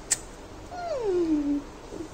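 A woman's drawn-out wordless vocal sound, sliding down in pitch over about a second, with a short sharp click just before it.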